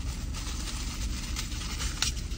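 Low steady rumble of a car idling, heard inside the cabin, with a few light crinkles and clicks of a small plastic sample cup being handled.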